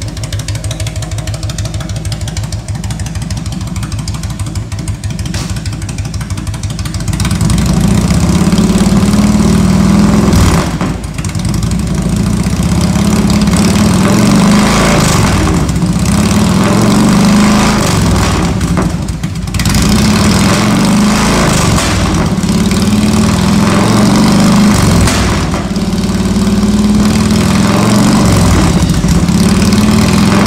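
The Twin Cam 88 V-twin engine of a 2000 Harley-Davidson Road King Classic FLHRCI running: idling with an even pulsing beat at first, then from about seven seconds in running louder and harder. Three brief dips in the sound come near the eleventh second, the middle and the last few seconds.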